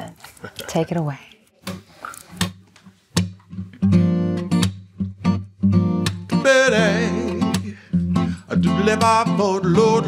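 Brief talk at first, then an acoustic guitar starts a slow picked intro about three seconds in. From about halfway, a man's voice sings wordlessly over it.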